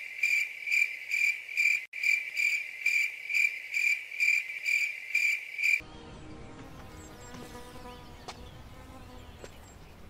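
Cricket chirping, a steady high pulse repeating about two to three times a second, used as an awkward-silence sound effect; it cuts off suddenly about six seconds in. Faint quiet background follows.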